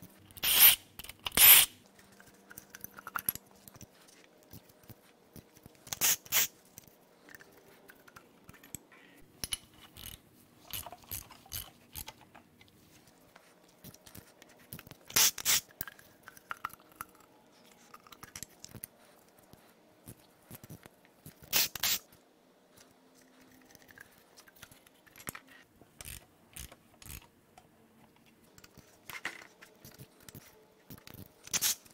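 Metal clinks, knocks and light scrapes of a socket extension and loose parts as connecting-rod caps are unbolted from the crankshaft of a Mercedes M156 V8 during teardown. A few sharp, loud clacks stand out among lighter clicks, the loudest two near the start.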